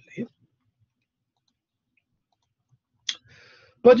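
Near silence, then a single sharp click about three seconds in, followed by a faint short breath-like hiss just before speech resumes.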